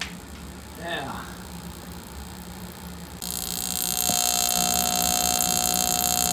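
Experimental burner being fired: about three seconds in a sudden, steady, loud hiss of air and fuel flow starts, joined about a second later by a click and a steady buzzing tone as the spark igniter arcs inside the combustion chamber. The burner fails to light.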